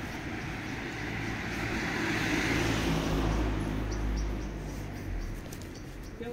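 A car driving past on the street, its engine and tyre noise swelling to a peak about three seconds in, then fading away.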